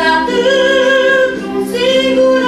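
A woman singing solo, holding long notes, with a short break and a new note near the end.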